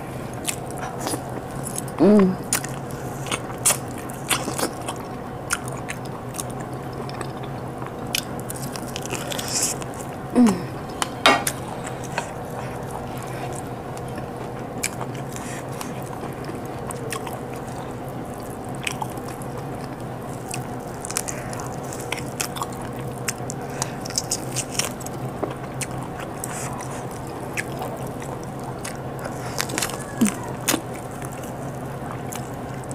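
Close-up eating sounds: a person biting and chewing chicken eaten by hand, with many short, scattered mouth and lip clicks. A short hummed 'mm' comes twice, about two seconds in and again about ten seconds in, over a steady faint hum.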